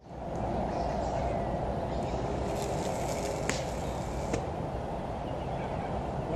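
Steady low background noise of the open air, with two sharp clicks about a second apart near the middle.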